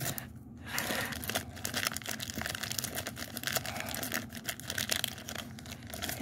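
Plastic M&M's candy bag crinkling and rustling as it is handled and tipped, with small clicks of candies dropping into a plastic tub.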